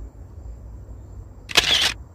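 A single camera-shutter click sound, as a phone photo is snapped, about one and a half seconds in, over a low background rumble.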